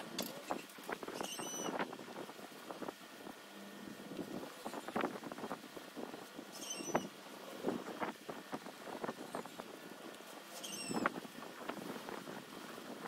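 Quiet irregular clicks and scratches of a bottle and brush as dark wood stain is poured onto pine boards and brushed on. A short high chirp sounds three times, about five seconds apart.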